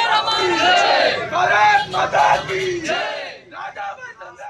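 A group of protesters shouting slogans together in loud bursts of raised voices, trailing off after about three seconds.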